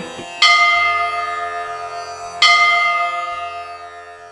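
A bell struck twice, about two seconds apart, each strike ringing on and slowly fading, over a faint low steady drone.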